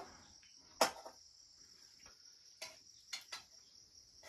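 Crickets chirring steadily in a high, even band, with a few sharp metallic clinks of a utensil against a cooking pan, the loudest about a second in.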